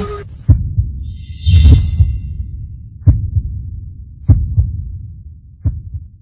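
Intro sound design for a title sequence: about six deep bass booms at uneven spacing, each dying away. A high shimmering whoosh rises with the loudest boom about a second and a half in.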